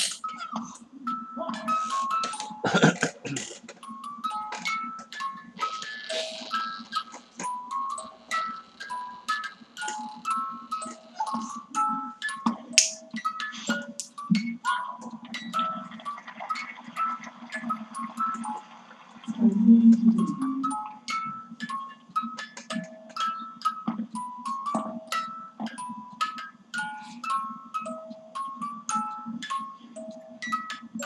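A small toy playing a chiming, music-box-like melody of short, high plucked notes that goes on without a break.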